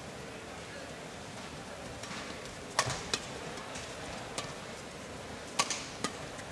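Badminton rackets striking a shuttlecock during a rally: a handful of sharp hits spaced roughly a second apart, over the steady hum of an indoor arena crowd.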